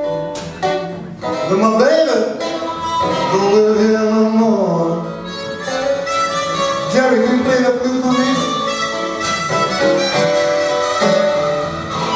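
Blues harmonica solo with notes bent up and down, over acoustic guitar accompaniment in a slow blues.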